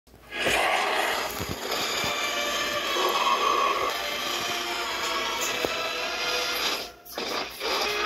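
Soundtrack of a superhero film's battle scene playing from a screen's speaker and picked up off the room: dramatic music mixed with a few sharp impact hits, dipping briefly near the seven-second mark before picking up again.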